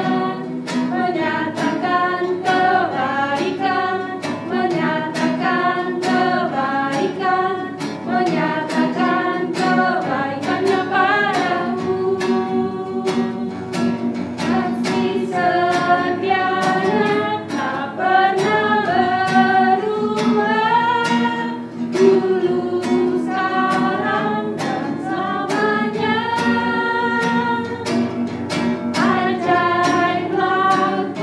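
A small group of voices singing an Indonesian praise song in unison, accompanied by strummed acoustic guitar.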